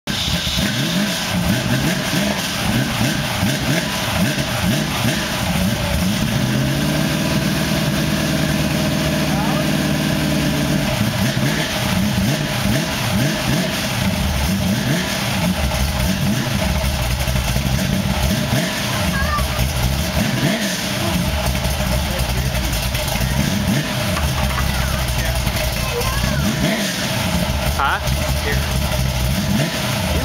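Ford 351 Windsor V8 with a big cam, Demon carburettor and Flowmaster mufflers, running at idle and being revved: it climbs to a held rev about six or seven seconds in for roughly four seconds, drops back, then takes several short blips in the latter half.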